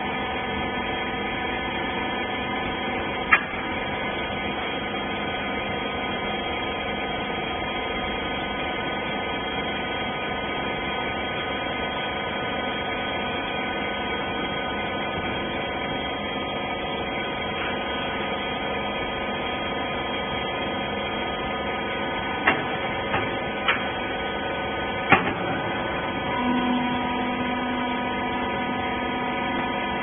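Hydraulic rag baler's power unit (electric motor and pump) running with a steady, many-toned hum. A sharp knock comes a few seconds in and a quick cluster of knocks near the end, and just after them a lower hum joins, as the pump comes under load.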